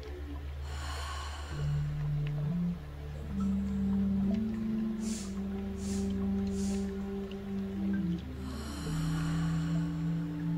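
Three short sniffs through the nose less than a second apart, a breath drawn in three parts, and a long breath out near the end, with another breath about a second in. Under them, soft background music of slow sustained notes.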